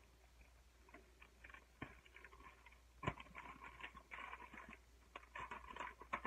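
Scissors cutting open a plastic mailer bag: faint crinkly rustling of the plastic with a few sharp snips.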